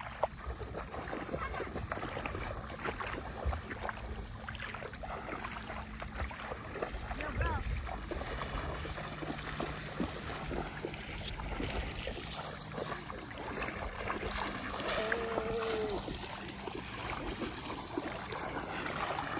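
Shallow river water splashing and sloshing as people wade through it, with a constant rumble of wind on the microphone.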